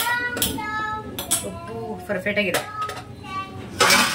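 Slotted metal spatula clinking against a large aluminium cooking pot, a few sharp clinks, with a louder clatter of stirring right at the end. A high-pitched child's voice talks over it.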